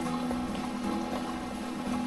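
Mountain stream rushing steadily over stones.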